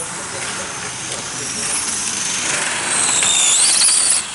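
High-pitched whine of a radio-controlled model race car driving the track, rising in pitch and getting louder in the second half as it speeds up and comes closer.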